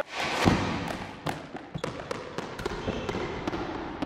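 End-card sound effects: a deep hit about half a second in, then a run of sharp, irregular taps and clicks.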